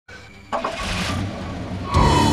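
Car engine and road noise heard inside the cabin, a steady low rumble that starts about half a second in.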